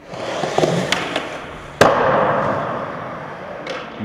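Skateboard wheels rolling on a concrete skatepark floor, with a few light clicks of the board and one loud, sharp slap of the deck a little under two seconds in.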